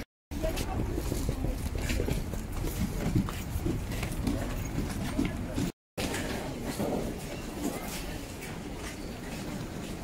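Busy station crowd ambience: indistinct voices and general street noise with light traffic. The sound drops out briefly twice, at the start and a little past halfway, where the scene changes.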